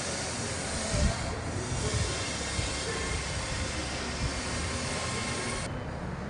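A steady, even hiss with a few low thumps; it cuts off suddenly near the end.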